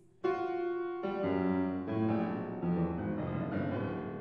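Piano accompaniment playing alone in a classical art song: a series of struck chords, the first about a quarter second in, dying away near the end.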